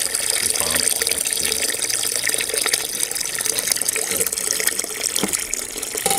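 Pumped wort pouring from the recirculation return into a BIAB mash kettle: a steady splashing of liquid falling onto the foaming mash surface.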